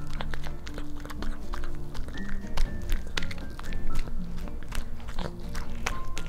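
A pet chewing and biting into a tuna rice ball, a quick run of short clicks, over background music.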